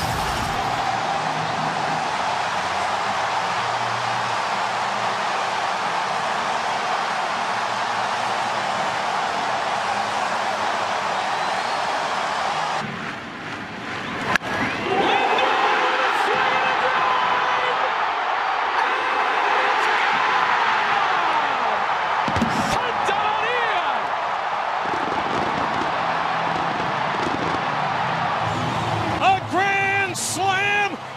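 Baseball stadium crowd roaring after a grand slam, a steady loud cheer. About thirteen seconds in it cuts to another stadium crowd with voices over it, and a single sharp crack comes a little past the middle.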